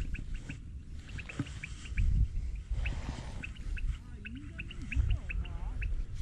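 Birds chirping in short, high calls, several a second, over a low rumble.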